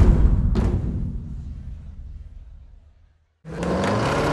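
A single deep boom, like a big drum hit, that dies away over about three seconds into a moment of silence. About three and a half seconds in, a steady low humming sound cuts in abruptly.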